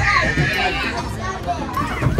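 Children's voices in a busy playground: scattered chatter and calls from several kids at once.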